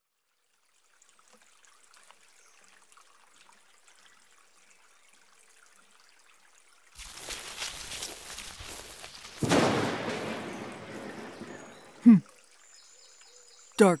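Thunderstorm sound effects: a faint hiss of ambience, then about seven seconds in a swell of rain-like noise and, a couple of seconds later, a louder clap of thunder that rumbles away over a few seconds. Near the end comes a short hum from a woman's voice.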